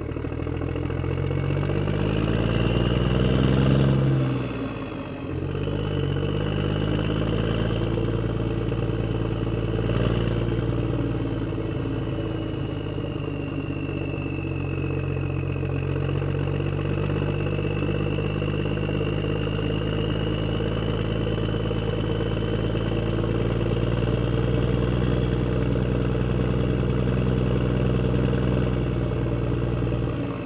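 Motor vehicle engine driving away: its note rises for the first four seconds, drops off briefly as it shifts up a gear, then runs steadily at a lower pitch for the rest.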